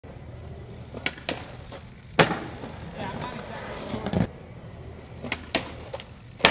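Skateboard wheels rolling on concrete, with a loud clack of the board just after two seconds and a steady roll that cuts off about two seconds later. Near the end come two sharp clacks as the board pops up onto a brick ledge.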